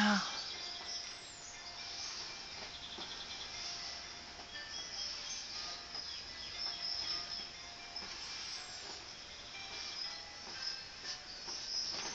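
Soft, faint scratching of chalk being stroked across drawing paper, coming in short irregular swells.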